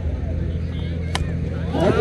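A single sharp crack about a second in, a cricket bat striking the ball, over a steady low hum and faint crowd noise.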